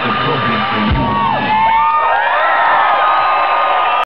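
Live electronic music through a festival PA, with a deep falling bass sweep about a second in. After it the crowd cheers and whoops over the music.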